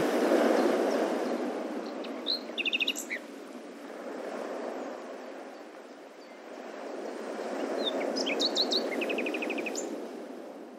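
Birds chirping, with two short phrases of chirps and quick trills, one a couple of seconds in and one near the end, over a soft outdoor rushing noise that fades and swells again.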